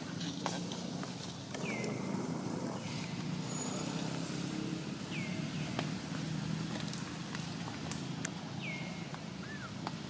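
Outdoor background with a steady low hum. A short high call slides down and levels off three times, about three and a half seconds apart, with scattered light ticks between.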